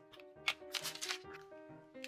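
Tracing paper rustling and crackling in short bursts as the freshly cut sheet is handled and moved on the mat, the sharpest about half a second in, over light instrumental background music.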